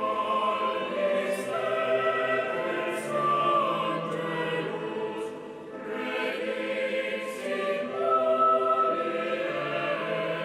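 A small mixed choir of men and women singing sacred liturgical music, sustained phrases with a swell in loudness about eight seconds in.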